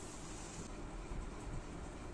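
Steady hum and hiss of a desktop PC's fans running as it boots, with a high hiss that drops away a little under a second in.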